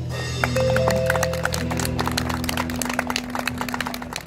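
Live instrumental rautalanka band of electric guitars, bass and drums holding sustained notes that ring on and slowly fade as the tune ends, with many scattered sharp taps over the top.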